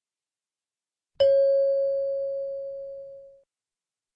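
A single chime struck once about a second in, ringing at one clear pitch and fading away over about two seconds: a cue tone in a recorded listening test, marking the end of the dialogue.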